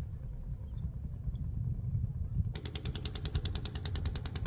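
Low, steady running of a small boat engine, joined about two and a half seconds in by a rapid, even clatter of about a dozen sharp ticks a second.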